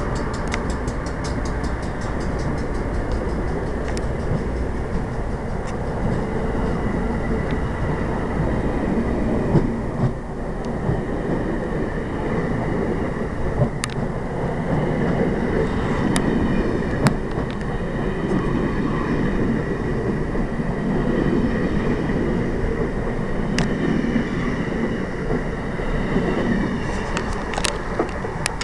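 Amtrak passenger train departing behind AEM-7 electric locomotives, rolling past close by with a steady heavy rumble and sharp wheel clicks here and there. It fades slightly near the end as the rear of the train draws away.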